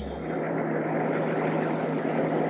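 Car driving: a steady engine drone and road noise, with a constant low hum underneath.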